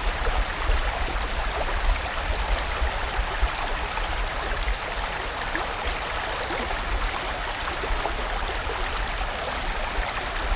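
Mountain stream running over rocks: a steady, even rush of water with a low rumble underneath.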